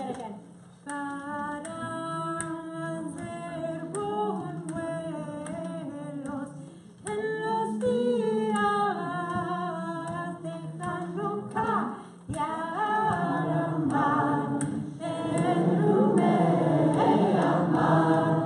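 A group of voices singing a cappella, led by a woman, in short phrases with brief breaths between them. The singing grows fuller and louder in the last few seconds.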